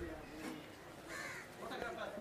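A crow caws faintly once, about a second in.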